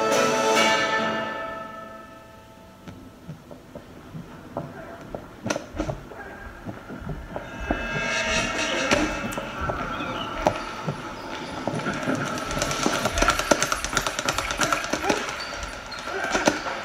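Soundtrack of a black-and-white boxing short film. Music fades out over the first two seconds, followed by a quieter stretch with a few scattered thuds. From about halfway, music builds again under a rapid run of sharp thuds, punches landing in a boxing-gym training scene.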